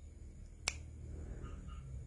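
A single sharp click, like a finger snap, about two-thirds of a second in, over a faint low hum of room tone.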